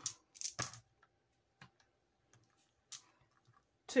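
Three plastic dice clicking as they are rolled from the hand onto a paper game board: a few short, separate clicks, the loudest about half a second in and another near three seconds in.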